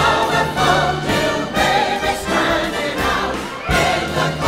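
A mixed chorus of stage singers, men and women, singing together over orchestral accompaniment, in a show-tune production number.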